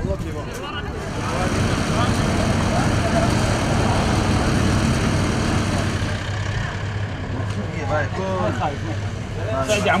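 A vehicle engine running with a steady low hum, under faint background voices.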